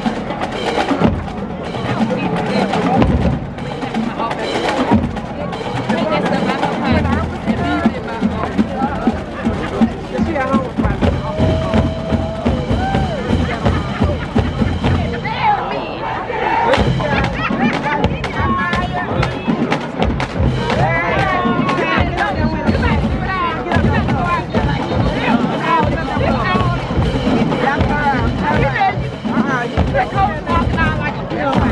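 Marching band drumline playing a rhythmic percussion cadence on snare drums, bass drums and crash cymbals, with a crowd's voices mixed in.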